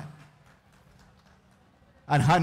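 A pause in an amplified speech. The speaker's last word fades out through the loudspeakers, then there is only faint background noise with a low, steady hum.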